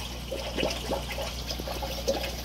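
Aquarium water trickling and bubbling at the tank's filter: a stream of small, irregular plinks and drips over a steady low hum.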